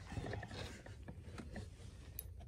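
Fishing reel clicking as a hooked rainbow trout is played, with several separate mechanical ticks and a short rush of noise near the start.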